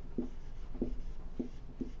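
Dry-erase marker writing on a whiteboard: a handful of short strokes about half a second apart as letters are drawn.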